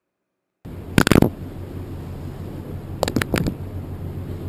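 Audio of a GoPro camera's own recording: after a short silence, steady outdoor noise with a low hum cuts in. Two clusters of sharp knocks on the camera come, about a second in and about three seconds in, as a seagull puts the camera down and pecks at it.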